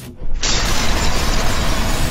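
A loud mechanical-sounding sound effect, dense noise over a deep rumble, comes in sharply about half a second in and holds steady.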